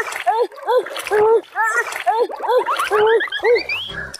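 Water splashing as a small child flounders in a shallow, muddy pond, over a quick run of short pitched tones, about two a second, that climb higher near the end.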